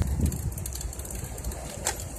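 Steady low rumble of a bicycle rolling along a paved path, with wind on the microphone and faint clicks; one sharp click comes shortly before the end.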